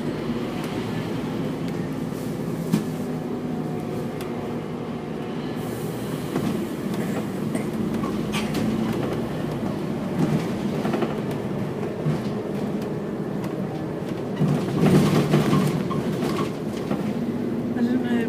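Cabin noise inside a moving double-decker bus: a steady engine drone and road rumble, with light rattles of the bodywork. It swells louder for a moment about fifteen seconds in.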